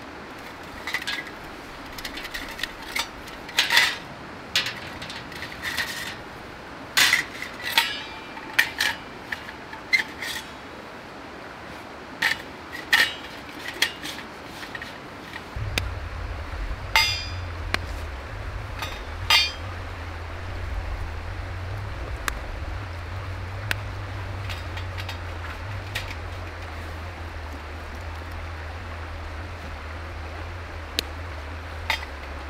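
Stainless steel wood gas stove parts clinking and knocking as they are handled and fitted together, the sharp metal clicks thickest in the first twenty seconds. A steady low rumble comes in about halfway.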